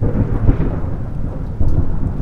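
A thunderstorm: thunder rumbling over steady rain.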